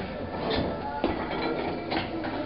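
A few short knocks, about half a second and a second in and again near the end, as a plate-loaded 12-inch strongman log is lifted off its rack and cleaned to the chest, over background music.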